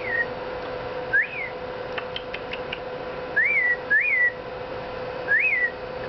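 A person whistling five short notes, each sliding up and then back down, to coax a pet cockatiel into whistling back. The bird stays silent.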